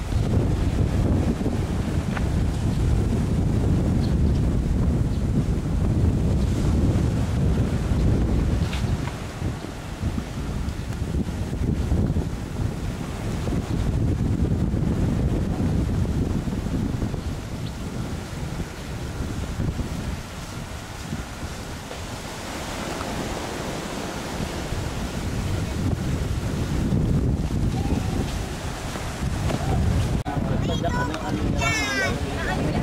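Wind buffeting the microphone over the steady wash of surf breaking on the shore. The surf's hiss comes through more clearly about two-thirds of the way in, as the wind rumble eases.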